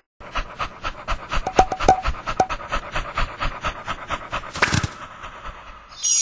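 A cartoon dog panting rapidly and eagerly, about six breaths a second, fading away near the end. A short burst of noise comes shortly before the end.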